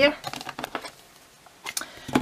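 Light clicks and taps of craft supplies being handled on a desk, ending with a couple of sharper plastic clicks as a Versamark ink pad's case is opened.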